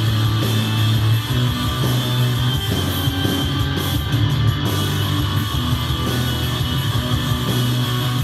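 Loud post-hardcore rock music with guitars and heavy bass: an instrumental passage with no vocals.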